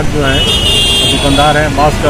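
A man speaking Hindi over steady road-traffic and engine noise, with a high steady tone lasting about a second near the start.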